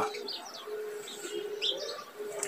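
Birds calling: a low, steady note held a few times in a row, with several short high chirps over it.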